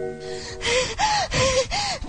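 A chime-like mallet-percussion music cue dies away, then a person gasps in a rapid series of about five breaths, each with a short high voiced cry, as in panting or sobbing.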